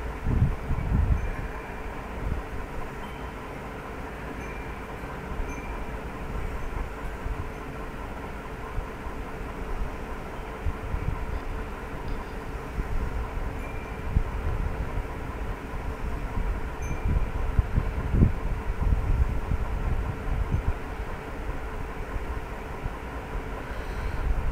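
Steady background noise with a faint constant hum and irregular low rumbling swells.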